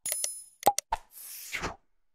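Sound effects for an animated subscribe button. A click with a short, high bell-like ring comes at the start, then a few quick mouse-click pops around the middle, then a whoosh near the end.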